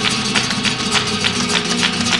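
Flamenco guitar playing tarantos under a dancer's rapid footwork: quick, sharp heel and toe strikes on the stage floor, several a second.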